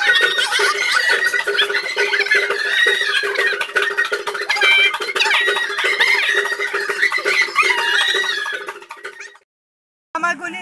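Festive gathering noise: many women's voices with high, wavering trilled calls (ululation) over steady rhythmic handclapping. It fades and cuts off shortly before the end.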